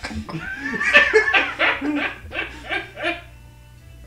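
Men laughing in quick repeated bursts, dying down about three seconds in.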